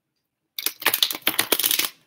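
A tarot deck being shuffled by hand: a quick, dense run of papery card flicks starting about half a second in and lasting just over a second.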